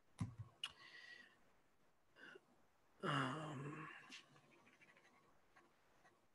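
A quiet pause with a few faint, short clicks near the start and again about four seconds in, and a man's drawn-out 'um' about three seconds in.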